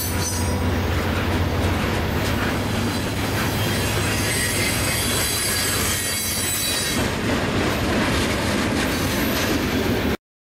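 Freight train of boxcars and tank cars rolling past close by: a steady, loud noise of wheels on rail with high wheel squeal.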